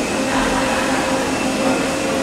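Steady machinery drone: an even rushing noise with a few low and mid steady hum tones held unchanged throughout.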